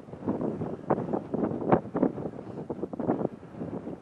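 Wind buffeting the microphone in irregular, uneven gusts.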